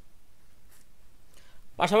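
A pause in conversation: quiet room tone with two faint, brief noises, then a man starts speaking near the end.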